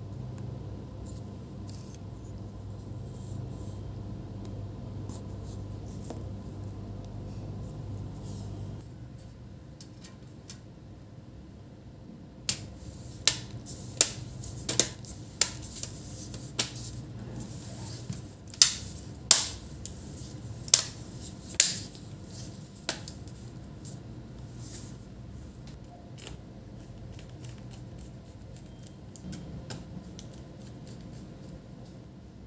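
About eleven sharp plastic clicks over some ten seconds around the middle, as a laptop's bottom cover is pressed down and its clips snap into place. Before them a low steady hum stops suddenly about a third of the way in.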